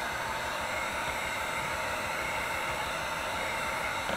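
Electric heat gun running, blowing hot air in a steady, unbroken rush.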